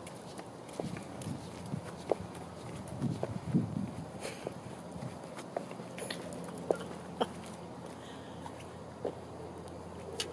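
Footsteps of a person and a dog walking on asphalt: scattered light clicks and scuffs over a low steady background, a little louder about three seconds in.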